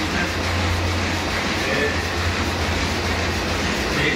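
Solna 225 sheet-fed offset printing press running, a steady mechanical running noise over a low hum.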